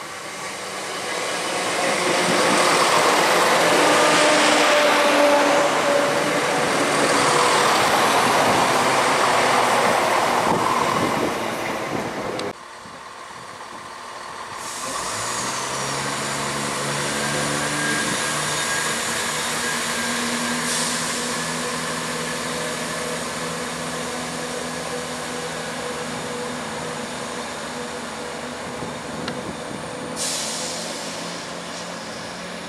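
Class 171 Turbostar diesel multiple unit running along the platform, wheel and rail noise with its underfloor diesel engines, loud for about ten seconds and then cut off suddenly. After that, a Class 171 pulls away from the platform, its diesel engines humming steadily under power as it draws away.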